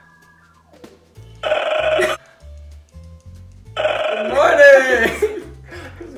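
Two loud, throaty vocal noises from a man, the second longer and falling in pitch, over background music with a repeating bass line.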